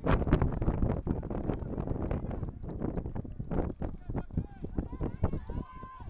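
Wind buffeting the microphone in rapid, irregular low thumps, loudest in the first second or so, under distant shouting from players on the field. One call is held near the end.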